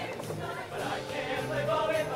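A high school show choir singing in full voice, with a live band accompanying.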